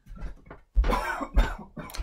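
A woman with the flu coughing twice, short coughs about a second in.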